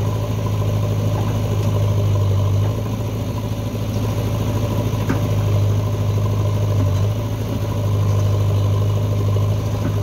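Diesel engine of a JCB backhoe loader running steadily while the backhoe arm dumps soil and swings back. The note dips in level about three seconds in and again about seven seconds in as the hydraulic load changes.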